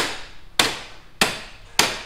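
Four regular hammer blows on metal, about one every 0.6 s, each sharp with a short ringing decay: tapping the Honda CRF250L's steering stem out of the head tube to replace its worn original steering head bearings. The stem is stuck with old, gunky grease.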